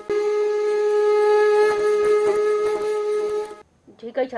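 Title-card jingle: one long, steady wind-instrument-like note rich in overtones, briefly broken right at the start, cutting off abruptly about three and a half seconds in.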